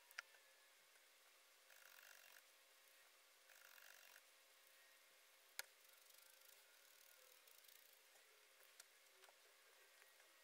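Near silence, with faint sounds of hands working wool fur and small tools: two short soft rustles and a few small clicks, the sharpest about halfway through.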